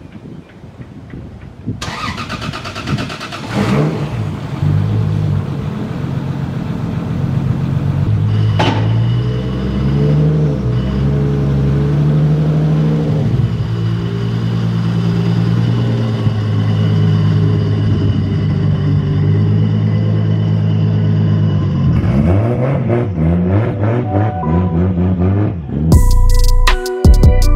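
Nissan 240SX drift car's engine turned over by the starter for about two seconds, then catching and settling into a steady idle. Near the end the revs rise and fall a few times.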